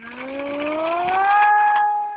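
RC model airplane's motor and propeller throttling up for takeoff: a rising whine that levels off about halfway through and then holds steady while fading near the end.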